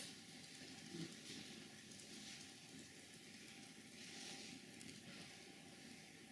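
Near silence: lecture-room tone with faint hiss and a soft rustle about a second in.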